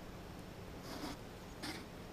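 Faint quiet background with two brief, soft rustles, one about a second in and one shortly after, like the plastic blade cover being handled or a breath.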